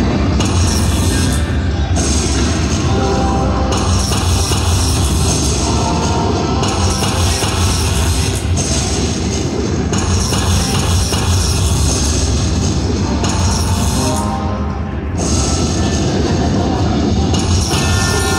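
Zeus Unleashed video slot machine playing its free-games bonus music, a loud rock-style track that runs without a break while the reels spin.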